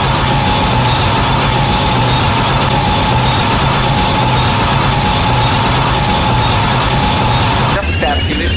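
Harsh noise section of an industrial speedcore track: a dense, loud wall of noise with a steady high whine over a low hum that pulses, changing abruptly near the end as the next section begins.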